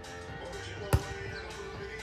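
A single sharp smack of a volleyball being struck by hand, about a second in: a serve, over steady background music.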